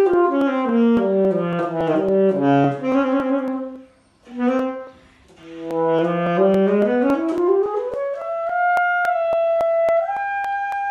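Alto saxophone played solo: a descending melodic phrase, a short break about four seconds in, then a rising run of notes climbing to a long held high note near the end. An even ticking runs beneath the playing.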